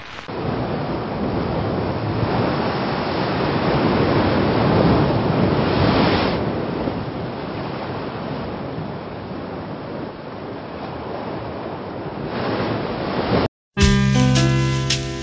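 Ocean surf: waves breaking and whitewater rushing in a steady roar of noise that swells a few seconds in and eases later, cutting off abruptly just before the end.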